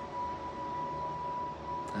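A steady high-pitched tone, unchanging in pitch, held over low room noise.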